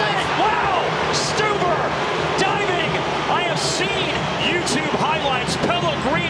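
Soccer stadium crowd, many voices shouting and cheering together at a steady, loud level, reacting to a goalkeeper's save.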